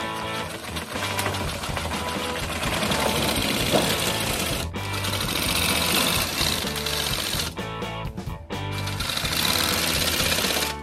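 Power metal-shear attachment cutting thin aluminium sheet, a fast, even mechanical chatter that breaks off briefly a little past the middle and starts again, with background music playing.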